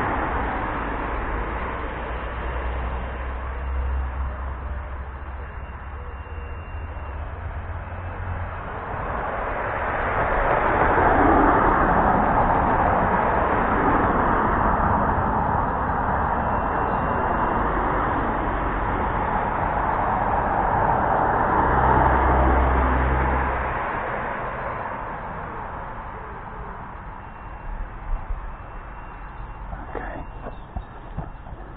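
Road vehicles passing nearby: a broad, steady rushing noise that swells for several seconds in the middle, then fades toward the end, with a low rumble at the start and again shortly before it fades.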